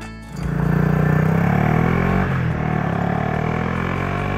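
Adventure motorcycle pulling away hard from a standstill: the engine note climbs as it accelerates, drops about two seconds in at a gear change, and climbs again, with music beneath.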